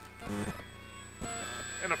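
Faint voices in a quiet lull, with a man starting to speak near the end.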